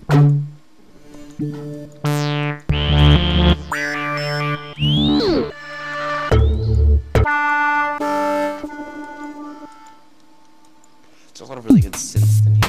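Native Instruments Massive software synthesizer presets auditioned one after another by stepping through them with the preset arrows. The result is a string of short synth bass sounds that changes every second or so, with falling and rising pitch sweeps, deep bass notes in the middle, and a short lull before a last falling sweep near the end.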